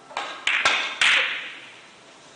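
Carom billiard balls clicking: a quick run of four sharp hits within about a second, the loudest about a second in, each ringing briefly as a shot plays out.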